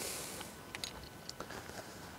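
A brief breathy rush of noise, then a few light crunching clicks of footsteps on frosty grass.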